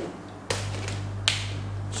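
A single sharp click of a whiteboard marker, over a steady low electrical hum that starts abruptly about half a second in.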